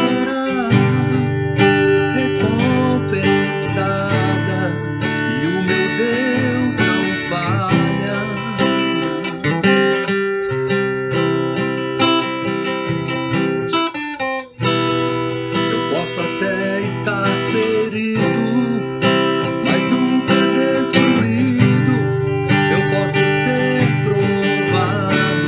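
Acoustic guitar strummed steadily through the song's chord progression of E minor, C, G and D. There is one brief break in the strumming a little past halfway.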